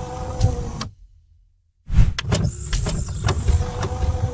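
Sound effects for an animated channel bumper: sharp clicks over a low rumble and a steady tone. The sound cuts out for about a second, then the same effect starts over.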